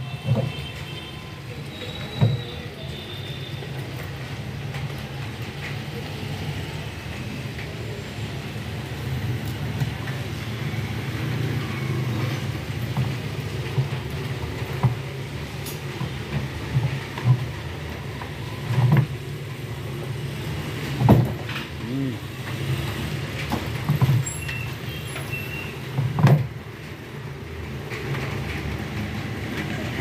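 Scattered knocks and thumps as the door gasket and plastic front tub panel of an LG front-load washing machine are handled and pressed into place, more frequent in the second half, over a steady low background rumble.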